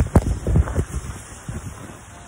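Phone handling noise: a run of irregular dull knocks and rubs against the microphone, fading out after about a second and a half.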